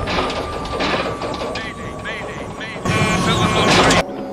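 Aftermath of a large explosion: debris crashing and clattering down, over a thin high tone that slowly drops in pitch. A louder rush of crashing comes near the end.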